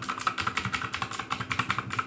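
Rapid typing on a full-size mechanical keyboard with blue (clicky) switches: a fast, crisp run of key clicks, like a typewriter.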